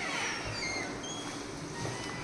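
A door swinging open on squeaky hinges: a short falling squeal right at the start, then a few brief high squeaks.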